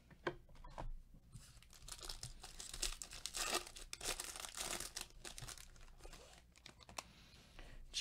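Foil wrapper of a Topps Chrome card pack being torn open and crinkled by gloved hands: several seconds of crackly tearing and crumpling that die down near the end.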